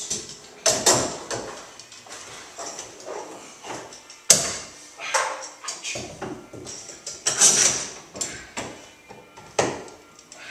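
Clamps being set on a freshly steamed wooden rub rail as it is pulled around the hull's curve: an irregular string of sharp clicks, knocks and rattles, the sharpest about four seconds in.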